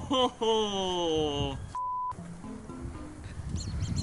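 Variety-show audio: a man's long drawn-out vocal sound sliding down in pitch. Then all sound cuts out for a short, steady censor bleep of about a third of a second, followed by quieter background show audio with music.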